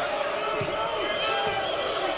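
Basketball being dribbled on a hardwood court, a few bounces about half a second apart, under the steady din of an arena crowd.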